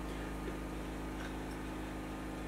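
Steady low hum with a faint hiss: room tone, even throughout, with no handling knocks or clicks standing out.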